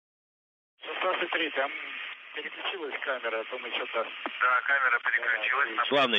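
Silent for most of the first second, then a voice talks over a radio communications link, thin-sounding with the highs cut off.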